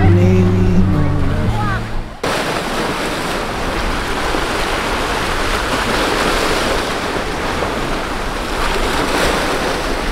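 A sung song with backing music ends abruptly about two seconds in. It gives way to the steady rush of sea waves washing against shoreline boulders.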